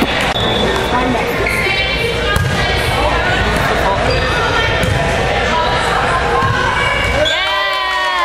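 Indoor volleyball play in a gymnasium: the ball being hit and bouncing, with players' calls and voices throughout. A loud, drawn-out shout comes near the end.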